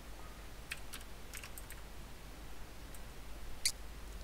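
Computer keyboard keys typed in short, scattered runs about a second in, then a single sharper click near the end.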